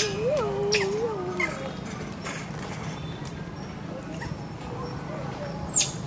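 A macaque's wavering, warbling call for the first second and a half, over a steady low hum, with a few sharp clicks, the loudest just before the end.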